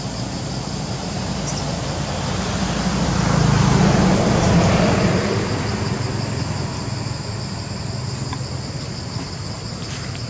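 A motor vehicle passing on a nearby road: its rumble swells to a peak about four seconds in and fades away, over a steady high-pitched drone.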